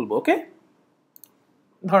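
A single computer pointer click on a menu item, heard as a quick faint double tick about a second in.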